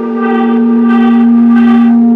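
A single steady low tone, gong- or singing-bowl-like, swelling louder over background music and cutting off suddenly at the end: an edited-in transition sound effect at a fade to black.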